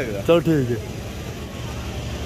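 A man's voice speaks briefly in the first part, then gives way to a steady low background hum of the street.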